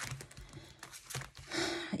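Clear plastic pockets and pages of a ring binder being flipped over, crinkling, with a string of light clicks and a softer rustle near the end.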